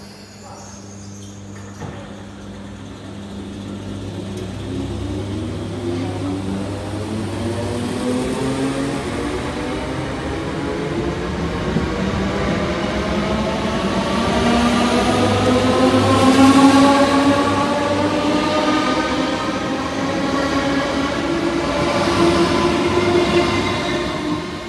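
Class 315 electric multiple unit pulling away from a standstill. The traction motors give a rising whine made of several tones that climbs steadily in pitch as the train gathers speed, steps back and rises again twice. Wheel and running noise grow louder as the carriages pass close by, loudest about two-thirds of the way through.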